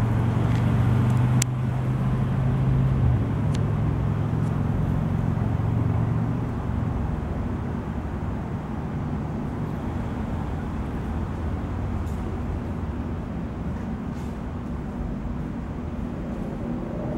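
A low, steady motor hum that steps up slightly in pitch about three seconds in and fades after about seven seconds, leaving a low outdoor rumble.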